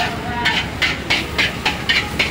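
Metal ladle scraping and clanking against a steel wok in a rhythmic stir-fry, about three sharp strokes a second, as fried rice is tossed. Under it runs the steady rush of the gas burner.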